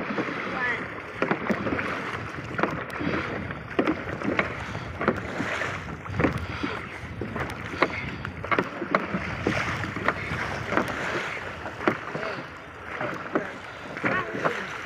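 A dragon boat crew paddling in unison: the blades catch and splash into choppy water in a steady rhythm, over the rush of wind and water past the hull.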